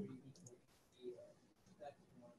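Near silence: room tone with a few faint clicks, after the fading tail of a laugh right at the start.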